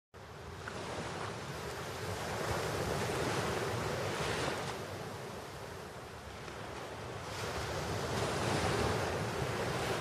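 Waves washing in slow surges: the sound swells for the first few seconds, eases off around the middle, and builds again near the end.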